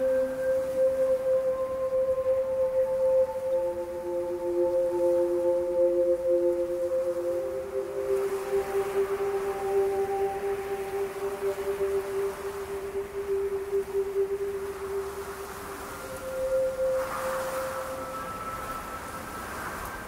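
Slow background music of long, held notes that change pitch every few seconds, with a soft swell about halfway through and again near the end.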